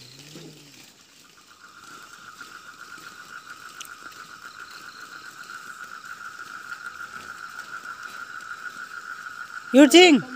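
A steady, rapidly pulsing high trill from a calling night animal starts about a second in and grows slightly louder. A brief loud voice cuts in just before the end.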